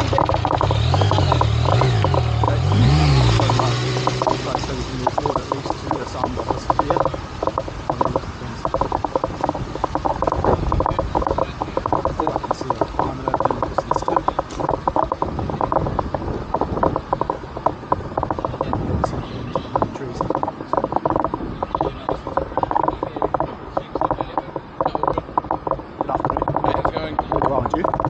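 A bicycle rolling along a paved path, with its freewheel ratchet ticking rapidly and rattling over the bumps. In the first few seconds a low engine sound, a motorcycle's, wavers up and down.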